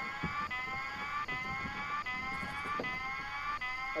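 Electronic alarm sounding, a repeating tone that falls slightly in pitch about twice a second.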